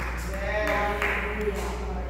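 A person's voice, drawn out and wavering, over a steady low hum.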